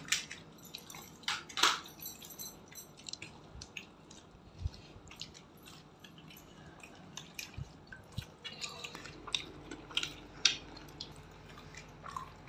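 People eating gupchup (pani puri): scattered short crisp clicks and small wet sounds as the hollow fried puris are cracked open, dipped in tamarind water and chewed.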